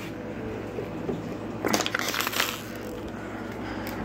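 Thin plastic water bottle crinkling and crackling as it is handled, in a short cluster of crackles about two seconds in.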